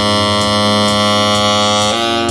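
Saxophone holding one long, steady, reedy note, moving to a new note just before the end.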